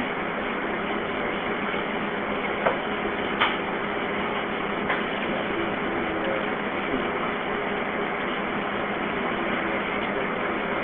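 Steady hiss and faint hum of an open telephone line on a recorded 911 call, with a few brief faint clicks and no voices.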